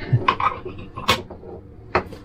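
Camera lenses and a padded camera bag being handled as the bag is emptied: a few short clicks, knocks and rustles, the sharpest about a second in.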